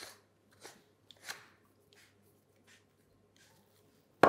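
Faint clicks and scrapes of a cream whipper's head being screwed onto its metal canister, a few small handling sounds spread over near silence.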